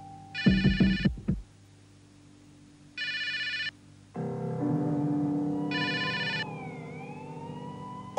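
Telephone ringing three times, each ring short and evenly spaced about two and a half seconds apart, with a few dull knocks under the first ring. A low sustained synthesizer chord comes in about four seconds in, with a tone that glides down and back up near the end.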